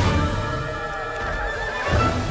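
Film trailer music, with a high wavering cry over it in the second half.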